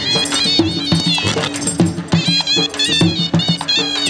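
Shehnai playing a wavering, ornamented melody over a steady dhol drumbeat: the traditional band music that accompanies a Punjabi horse dance.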